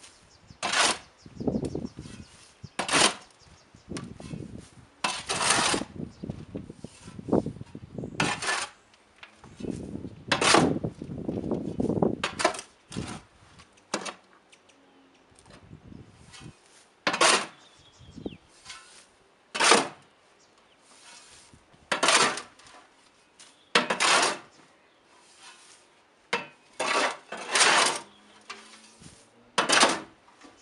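Metal shovel scraping and digging into soil, a stroke every two or three seconds, with a pause in the middle.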